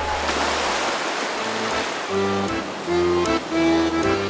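Small waves washing gently onto a pebble shore as a soft, even wash. About halfway through, accordion music with held chords comes in over it.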